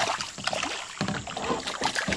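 A hooked bass thrashing and splashing at the surface right beside a kayak, making several irregular splashes about every half second.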